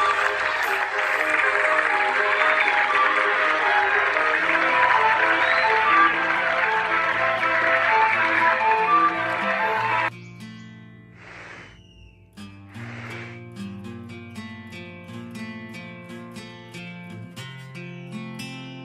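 Background music under loud crowd cheering and applause, which cut off suddenly about ten seconds in. Quieter plucked-guitar music follows, with a brief whoosh.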